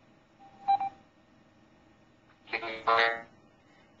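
A short electronic beep from a call app about three-quarters of a second in, as the call switches to audio only. Near three seconds comes a brief burst of the other caller's voice, distorted over a poor connection.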